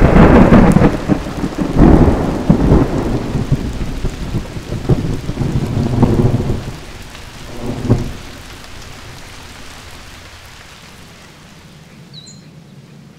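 Thunder rumbling in several peals over steady rain, loudest at the start. The rain fades away over the last few seconds.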